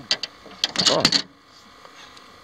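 A hooked drum being fought at the boat's side: a few quick clicks, then a dense burst of clicking and splashing about half a second long.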